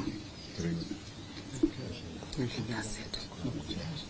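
Faint, low murmur of voices from people standing together after the statement ends.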